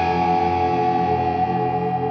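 1978 Ibanez Artist 2630 semi-hollow electric guitar through a 1979 Fender Deluxe Reverb amp, with overdrive and a Boss Space Echo. Held notes ring on and slowly fade with echo.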